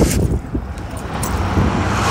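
A road vehicle approaching: engine and road noise with a steady low hum, growing steadily louder through the second half.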